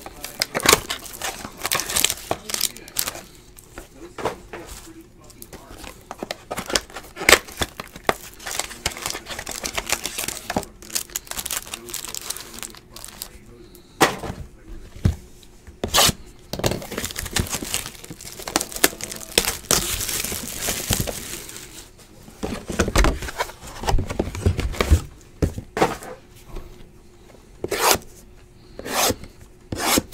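Trading cards and foil pack wrappers being handled: cards shuffled and flicked, wrappers crinkled and torn, and the cardboard box handled. It makes an uneven run of rustles, rips and light clicks, with a longer stretch of rustling about two-thirds of the way through.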